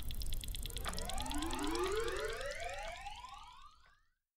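Sci-fi time-travel sound effect as the wrist-mounted time machine activates: a cluster of overlapping rising electronic sweeps over a fast pulsing shimmer, fading out near the end.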